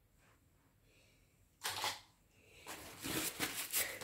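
Handling noise from hands at a plastic-covered work table: a brief rustle about one and a half seconds in, then a run of quick rustles and light clicks near the end.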